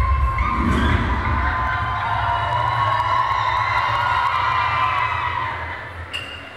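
Concert audience screaming and cheering over loud music with heavy bass, dying down near the end.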